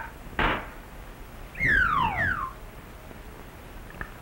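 Cartoon soundtrack sound effects: a short noisy hit about half a second in, then a loud whistle-like tone sliding steeply downward for under a second.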